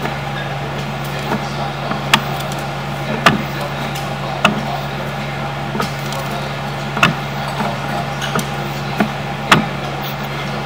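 A steady low mechanical hum, with sharp knocks at irregular intervals while a sewer inspection camera's push cable is fed down a drain line.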